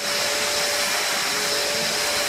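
Vacuum cleaner running on a carpet, a steady rushing noise with a whine held over it, starting abruptly.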